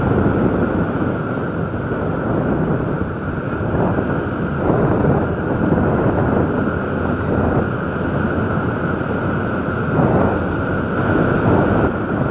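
Honda CG 150 Fan motorcycle on the move, its single-cylinder engine running under steady wind and road noise buffeting the microphone.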